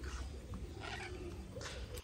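Faint background noise: a steady low rumble with a few soft, brief rustles.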